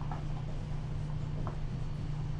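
Marker writing on a whiteboard: a few faint short scratchy strokes of the tip as a word is written, over a steady low hum.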